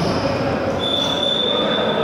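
Referee's whistle: one long, steady blast starting just under a second in, over the background noise of the sports hall.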